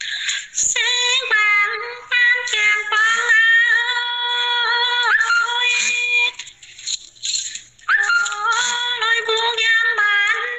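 A woman singing a folk song solo and unaccompanied in a high voice, with long held notes and small turns between them. She breaks off for a breath pause a little past the middle, then sings on.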